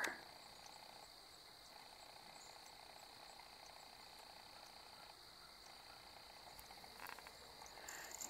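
Near silence with a faint, steady high-pitched insect chorus, such as crickets, and a few faint clicks near the end.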